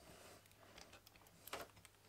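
Near silence with a few faint clicks and a light knock about one and a half seconds in: a power-supply circuit board with metal brackets being picked up and turned in the hands.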